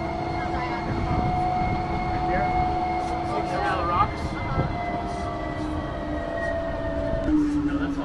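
Tour shuttle running along a canyon road, a steady rumble with a steady whine from its drive. A single knock about four seconds in, and the whine drops in pitch near the end as the vehicle slows.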